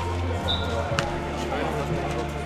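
A football-tennis ball is struck once, a single sharp thud about halfway through, over background voices.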